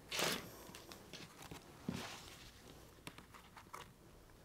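Rotary cutter slicing through the quilted layers (vinyl-coated candy wrapper, batting and backing) along an acrylic ruler on a cutting mat: a short rasping cut right at the start, the loudest sound, and a second shorter one about two seconds in, with small taps and clicks from the ruler and handling.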